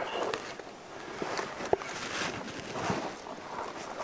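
Rustling with small crackles and cracks as spruce bark is pried and peeled away from the trunk by hand, with one sharper crack under two seconds in.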